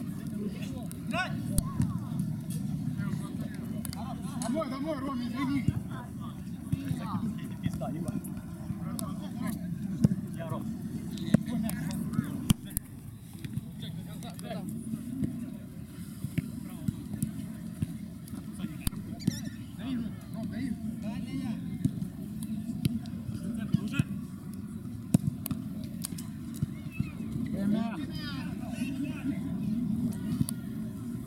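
Outdoor mini-football being played: distant shouts and calls from the players, and scattered sharp knocks of the ball being kicked, over a steady low rumble.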